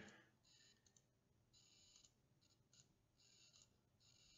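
Near silence, with a few faint computer mouse clicks as points are placed on a map.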